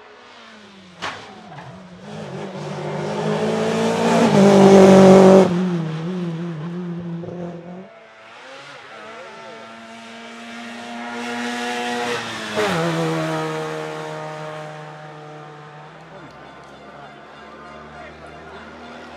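Two rally cars passing at speed one after the other. The first lands from a jump with a knock about a second in, then its engine climbs in pitch to a loud peak and drops away abruptly. The second car's engine rises to a peak with a sharp knock and then fades as it goes by.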